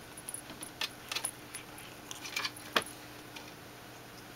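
Cat playing with a pink silver vine toy: scattered sharp clicks and light jingling rattles of the toy and paws, in small clusters, the loudest a little before three seconds in.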